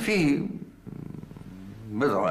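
A man's voice: a few words, then a low, creaky drawn-out hesitation sound lasting about a second, before speech starts again near the end.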